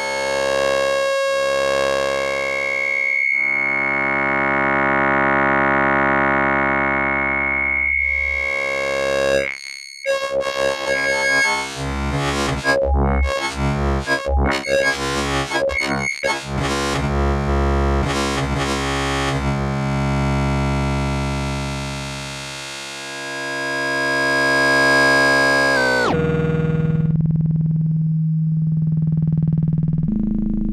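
Synthesis Technology E350 Morphing Terrarium wavetable oscillator playing a sustained, harmonic-rich tone whose timbre keeps morphing as LFOs sweep its X and Y axes, with its pitch played from a keyboard. About ten seconds in the sound breaks into rapid, choppy changes for several seconds. A few seconds before the end it drops to a lower, plainer tone.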